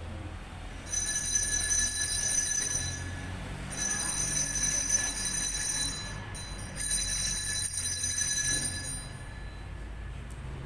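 Altar bells rung three times at the elevation of the chalice after the consecration at Mass, each ring lasting about two seconds with short gaps between them.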